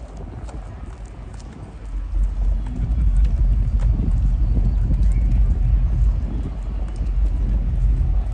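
Wind buffeting the microphone, a low rumble that grows louder about two seconds in, over footsteps and crowd chatter on a paved path.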